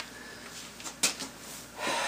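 A single sharp metal knock about a second in as the cast-iron drill press head casting is handled, followed by a breath near the end.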